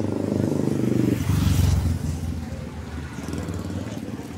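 A motorcycle engine passing close by on the street, loudest about a second and a half in, then fading away.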